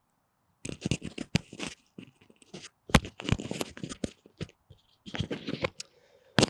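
Microphone handling noise: after about half a second of dead silence, irregular scratching and rubbing as a lavalier mic and its cable are fiddled with and clipped on, right at the mic. A sharp click comes about three seconds in.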